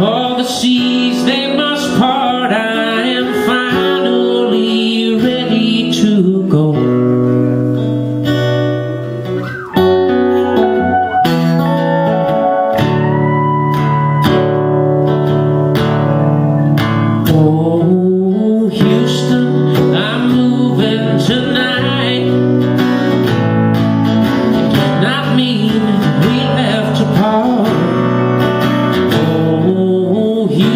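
Acoustic guitar strumming with a pedal steel guitar playing long, gliding notes over it, in a live country duo's instrumental passage. The playing drops back briefly near ten seconds, then picks up again.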